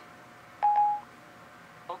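Siri's electronic end-of-listening beep on an iPad mini, one short steady tone about half a second in. It signals that Siri has stopped listening and is handling the spoken request.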